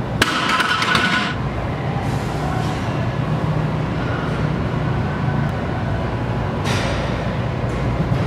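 Loaded barbell clinking and rattling during a bench press set, in two short bursts: one just after the start and a briefer one near the end, over a steady low hum.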